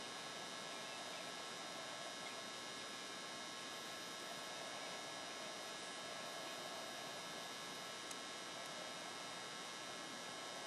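Steady low hiss with a faint electrical hum, the recording's background noise, with no other sound.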